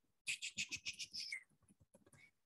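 A quick run of about eight sharp clicks in just over a second, made while paging back through presentation slides on a computer.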